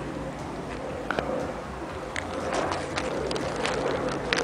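Outdoor street ambience: a steady low hum and rumble, with scattered short clicks and rustles of the camera being handled and moved close to the ground.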